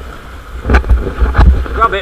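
Sea waves surging over rock ledges and splashing, with several sharp slaps of water and wind rumbling on the microphone; a person's voice starts near the end.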